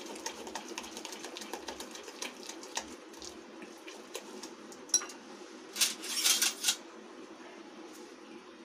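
Semolina (rava) idli batter being mixed by hand in a glass bowl with Eno fruit salt just stirred in: rapid fine wet clicks and squelches, with a louder scraping burst about six seconds in.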